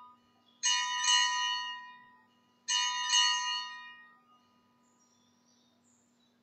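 Altar bell rung at the elevation of the consecrated host: two rings about two seconds apart, each a bright cluster of ringing tones that fades away over a second or two. The end of an earlier ring is still dying away at the start.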